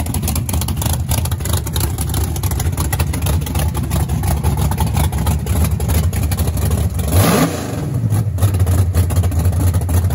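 Drag-race Chevrolet S-10 pickup's engine idling with a deep, uneven beat, blipped once about seven seconds in with a short rise in pitch.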